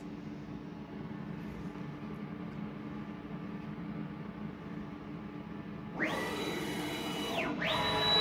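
AP4060 CNC router humming steadily at idle, then its axis drive motors whine as the machine starts moving about six seconds in: the pitch climbs sharply to a steady high tone, drops away briefly near the end and climbs again, the accelerate–cruise–decelerate pattern of a programmed move. The move is the start of the automatic tool-length measurement cycle.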